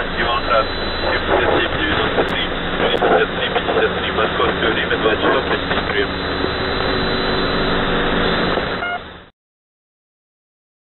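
Shortwave radio reception of the 3756 kHz band through a web SDR receiver: dense static and band noise with garbled voice-like fragments in the first few seconds. The audio cuts off suddenly about nine seconds in.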